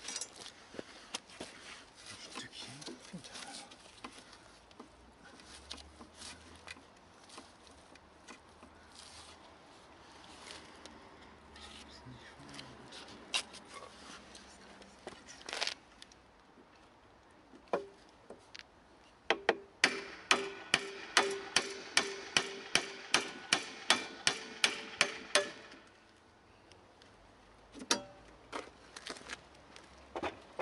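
Scattered clinks and scrapes of hand tools on metal, then, about two-thirds of the way in, a quick run of about twenty hammer blows on metal, each ringing, roughly three a second for about six seconds.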